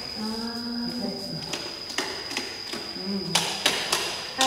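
Wall light switches clicked several times, with a quick run of sharp clicks near the end, over faint murmured voices.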